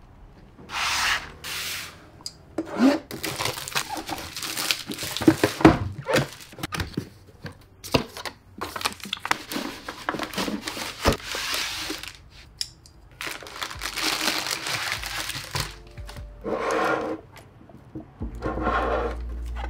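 Crinkling, rustling and tearing of plastic packaging as new PC parts are unboxed by hand, including the inflated air-cushion wrap around a power supply, broken up by sharp clicks and small knocks of parts and boxes on a wooden desk.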